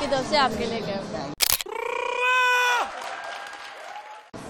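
Brief talking, then a sharp click about a second and a half in, followed by one held, steady-pitched tone with even overtones that lasts under a second and fades away.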